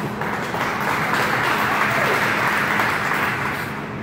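An audience applauding, the clapping building up within the first second, holding steady, then easing off near the end.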